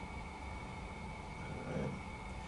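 Steady background hum of a small room with a thin, faint high steady tone; a soft low murmur comes in near the end.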